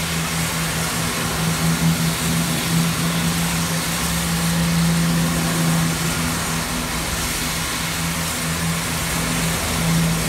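GWR Castle-class 4-6-0 steam locomotive 5043 standing at the platform, with steam hissing steadily, over a steady low engine hum.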